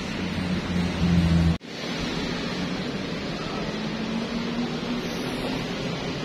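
Steady rushing outdoor background noise with a low hum that swells for about a second near the start, then cuts out abruptly for an instant before the hiss resumes. A faint low hum rises slowly in pitch in the middle.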